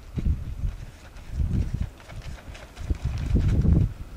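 Low, muffled rumbling and bumping noise on the microphone, coming in three bursts.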